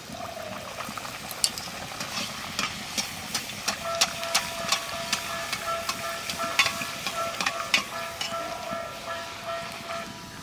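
A lentil-stuffed luchi deep-frying in hot oil in an aluminium kadai: a steady sizzle with many sharp crackles and pops. A perforated slotted spoon presses and turns the bread in the oil.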